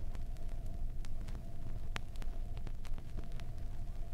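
Vinyl record surface noise on a 7-inch disc: a steady low rumble and faint hum with scattered clicks and crackles, the sharpest click about halfway through.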